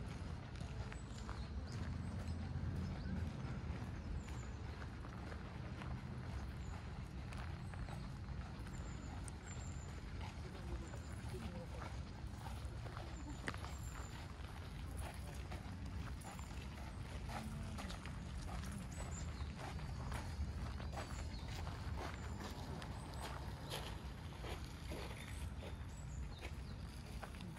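Footsteps walking on a gravel-and-dirt park path, many small irregular steps, with the voices of passers-by and a low rumble underneath.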